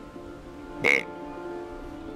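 A single short deer grunt blown on a tube grunt call about a second in, over steady background music.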